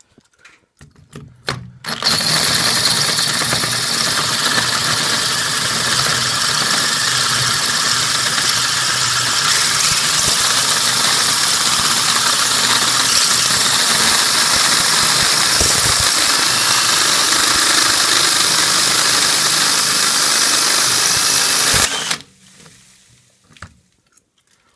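Cordless drill turning a 1-1/8-inch bi-metal hole saw as it cuts into a PVC drain tee, running steadily for about twenty seconds and stopping suddenly near the end. A few short clicks come just before it starts.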